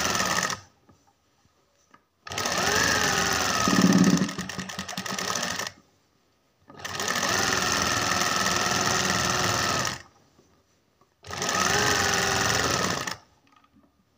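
Sewing machine stitching fabric in short runs: one run stops about half a second in, then three more of two to three and a half seconds follow, with brief pauses between. Its pitch rises as each run starts.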